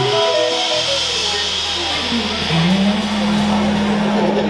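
Live band with electric guitar, bass guitar and drum kit ringing out at the end of a song. A short falling run of notes plays over a fading cymbal wash. About two seconds in, a low note slides up and is held to close.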